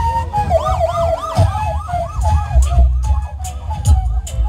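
Wooden flute playing steady notes over amplified backing music with heavy bass. About half a second in, a rapid siren-like warble joins it, about six up-and-down sweeps a second, lasting under two seconds. Sharp percussive hits come near the end.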